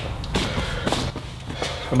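Clothing rustling as a hand brushes hurriedly at the front of a cotton hoodie, with scuffing and a few sharp knocks from moving about and the tool in hand.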